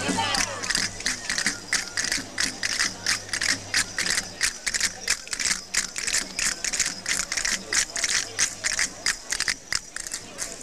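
Castanets played by a group of folk dancers, clacking in a quick, even rhythm. The clacking stops just before the end.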